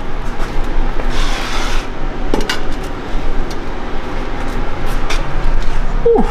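Steady workshop background noise with scattered light metallic clinks and ticks, and a short hiss about a second in.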